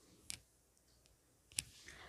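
Near silence with two faint, short clicks about a second apart, the second one sharper.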